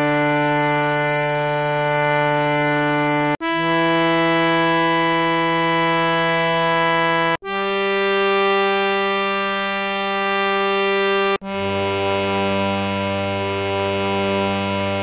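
Harmonium playing the ascending scale of Raag Bhoopali in G, one note held at a time for about four seconds with a short break between. The notes climb Pa, Dha, upper Sa, then drop to the low Sa a little before the end.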